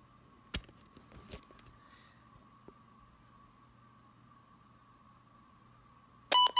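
Near silence with a faint steady high tone, broken by a few soft clicks about half a second and a second and a half in, as plastic buttons on an all-hazards weather alert radio are held down to factory-reset it.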